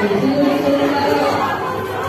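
Several people talking at once, in a large indoor hall.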